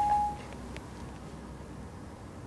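A single short electronic beep from the iPhone 4S, one steady mid-pitched tone lasting about half a second, then only low room tone.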